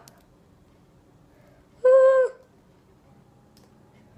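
A short, high, steady vocal 'ooh' or hum from a person, lasting about half a second midway, otherwise only faint handling noise.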